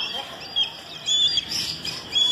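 Birds chirping: several short, high chirps in quick succession.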